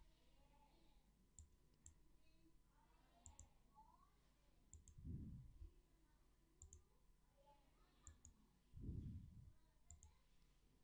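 Faint computer mouse button clicks, about ten, some in quick pairs, as colours are picked in a colour wheel. Two soft low thumps, one about halfway through and one near the end.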